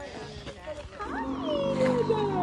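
Animatronic dinosaur's recorded roar played through its loudspeaker: one long roar that starts about a second in and slides down in pitch over a steady low hum.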